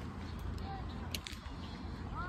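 Wind rumbling on the phone's microphone, with faint bird calls from a flock of geese and a brief crackling rustle about halfway through.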